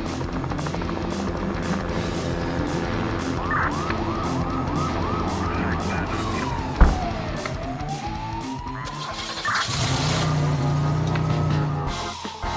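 Police siren over background music: a quick repeated yelp starts about a third of the way in, then gives way to a slower wail that falls and rises again. There is a single sharp knock about midway.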